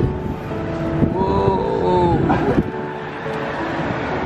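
Street traffic and wind noise heard from a moving pulled rickshaw, with a person's voice briefly in the middle.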